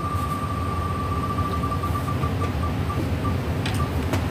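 Name-picker wheel app on a laptop ticking as the wheel spins. At first the ticks come so fast they run together into one steady high tone. About a second and a half in they separate and slow down as the wheel winds down. A low steady hum runs underneath.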